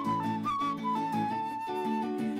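A transverse flute playing a melody over a strummed acoustic guitar: a few short notes, then one long held note through the second half.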